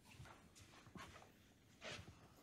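Near silence: room tone with a few faint scuffs of footsteps, the loudest near the end.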